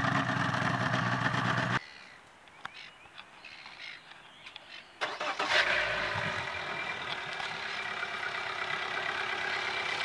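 Yamaha 130 hp V4 two-stroke outboard idling, cut off abruptly about two seconds in. After a quieter stretch, a Yamaha F130 fuel-injected four-stroke outboard starts at once about five seconds in, with a short low rumble as it catches, and settles into a steady idle.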